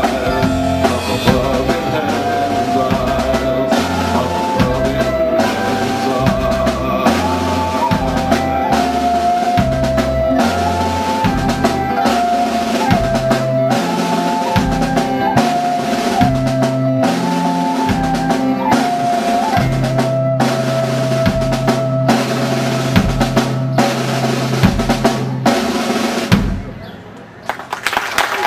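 Live folk-rock band playing an instrumental passage: drum kit, bass, electric guitar and mandolin under a held, stepping melody line. The song stops about a second and a half before the end.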